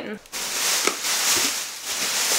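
Large clear plastic bag crinkling and rustling as it is handled and pulled out of a cardboard shipping box, starting a moment in.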